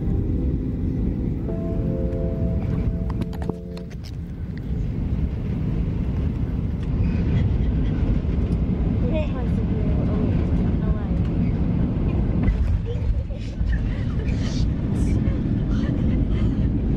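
Steady low rumble of a Boeing 737 airliner in flight. For the first few seconds it is heard under held musical notes, and from about seven seconds in, voices close by are heard over it inside the cabin.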